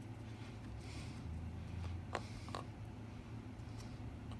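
A flat dry brush dabbing pigment onto a plastic model tank's hull: a few faint soft taps and scratches, two of them about two seconds in and one near the end, over a steady low hum.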